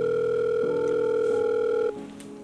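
Ringback tone of an outgoing mobile phone call: one steady electronic tone held for nearly two seconds, then cut off, over faint background music.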